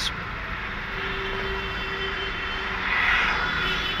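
Steady rumble of distant engine noise, swelling slightly about three seconds in.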